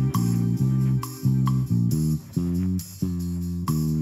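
Music led by a low, stepping bass line, with short sharp percussive ticks above it.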